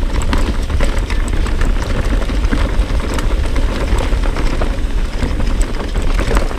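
Mountain bike descending a dirt singletrack at speed: the tyres run over the dirt with a continuous deep rumble, while the bike clatters and rattles over roots and stones in a rapid, irregular stream of clicks.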